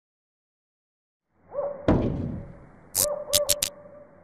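Sound design for a network logo sting. After a moment of silence a low drone fades in with repeated swooping tones, then a deep impact hit rings out and decays. Four short, sharp hits follow near the end.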